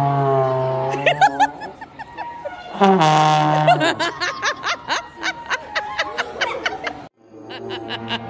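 Trombone played by a beginner: a held low note that slides down in pitch at its start and stops about a second in, then laughter, then a second shorter note that slides down the same way. Near the end another low held note starts.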